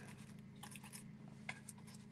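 Faint, soft brushing and a few light taps of a stencil brush working brown paint through a plastic stencil onto a sign board, over a steady low hum.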